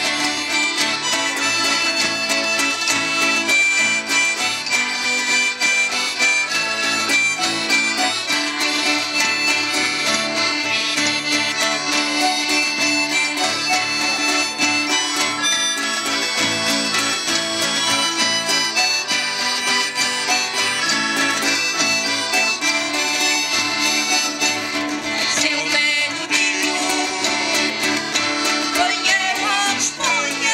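Portuguese folk band playing live, amplified: an accordion carries the tune over strummed acoustic guitars in a steady instrumental passage.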